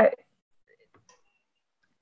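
A woman's voice breaks off after one word, then near silence over a video call line, with a faint tick about a second in.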